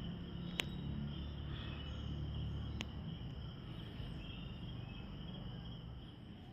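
Faint, steady, high-pitched insect trilling over a low rumble, with two faint clicks, one about half a second in and one about three seconds in.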